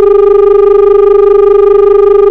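Loud, steady, buzzy telephone-line tone, one unchanging low-mid pitch, coming over the studio's phone-in line, like a dial tone on a dropped call.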